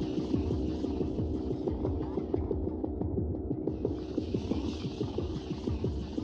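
Experimental ambient electronic music: a low steady drone under a dense crackle of small clicks, with a high hiss layer that drops out for about a second in the middle and then comes back.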